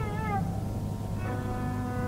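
Quiet lull in a Carnatic concert recording: a soft sliding, wavering melodic note fades out in the first half-second, then faint steady held tones come in over a constant low hum.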